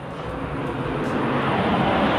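Engine noise of a passing vehicle, a steady rushing rumble that grows louder through the two seconds.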